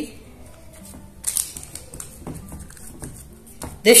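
Hands pressing bread dough into a parchment-lined loaf tin: the parchment paper rustles briefly about a second in, with a few light clicks and taps after it.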